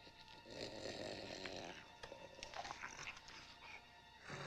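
Faint, rough, animal-like creature noises, the sound effects of the green ghost Slimer, with scattered short clicks later on.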